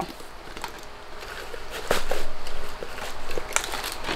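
Crinkling and rustling of crinkle-cut paper shred and packaging as gift items are handled and set into a basket, faint at first and louder in the second half with a few sharp clicks.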